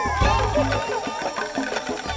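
Background music: an upbeat song with a bass line and percussion, with no sung words in this stretch.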